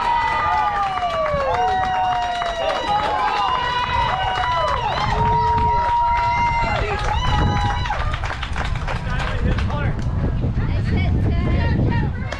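Several children's voices at once, yelling and cheering in long drawn-out high-pitched calls for about eight seconds, then shorter shouts with wind rumble on the microphone.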